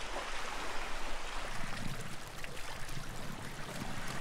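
Small waves lapping and washing over stones at a rocky shoreline, a steady wash of water that rises and falls slightly.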